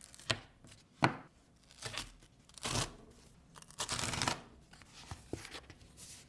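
Cardboard Apple Card folder being handled and opened: two sharp taps, then several rustling scrapes and tearing of card and paper as the flaps are pulled apart.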